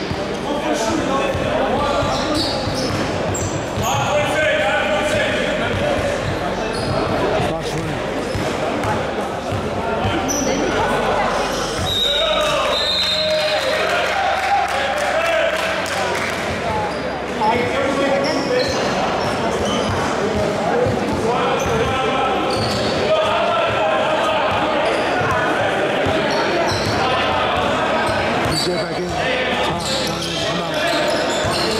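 A basketball bouncing on a hardwood gym floor during play, the strikes echoing around a large hall, with voices of players and spectators running through.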